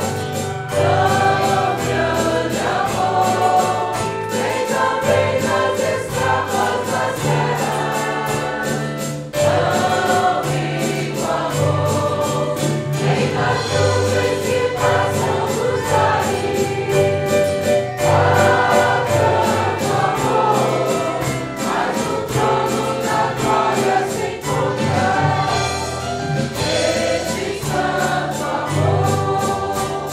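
Church choir singing the chorus of a Portuguese-language hymn, accompanied by a small band with guitars, bass and drums keeping a steady beat.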